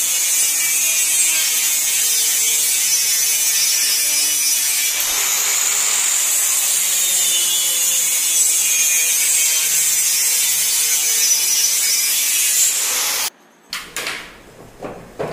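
Handheld electric circular saw ripping a long strip of laminated PVC board: a steady, high-pitched cutting hiss over the motor's hum. It stops abruptly about a second before the end, followed by a couple of knocks.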